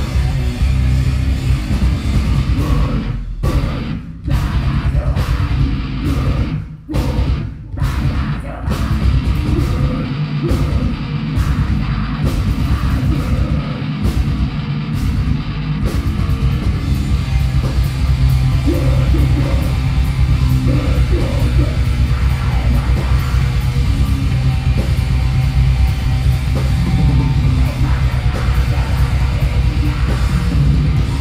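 Heavy metal band playing live and loud: distorted electric guitars, bass and drums. Several abrupt stop-start breaks in the first eight seconds, then continuous playing.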